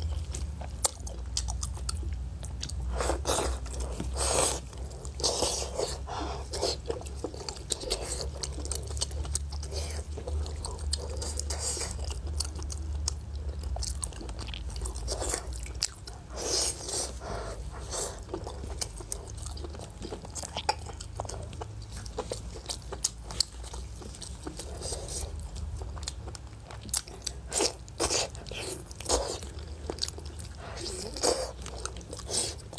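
Close-miked eating of pork knuckle: irregular wet bites, smacks and chewing of the skin and meat. A steady low hum sits underneath.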